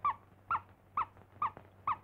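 Cartoon soundtrack effect: a run of five short, high, animal-like squeaks about half a second apart, each rising and then dropping in pitch.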